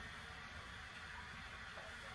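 Faint steady hiss of room tone; no distinct sound.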